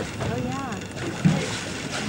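A brief, quiet voice sound about half a second in, over steady wind and water noise from the boat.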